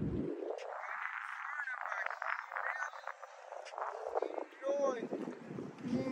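Indistinct human voices talking in the background, thin and muffled, with no clear words, over a faint outdoor haze.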